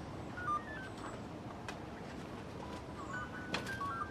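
Birds chirping in short high notes at stepping pitches over a steady outdoor hiss, with a couple of sharp clicks about three and a half seconds in.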